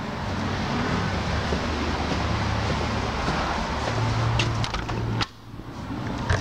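Steady outdoor background noise with a low hum, a few light clicks as the front door is opened, then the noise falls away abruptly about five seconds in.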